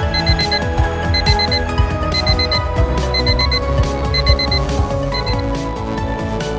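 Electronic alarm beeping in quick groups of four, about one group a second, stopping near the end, over electronic background music.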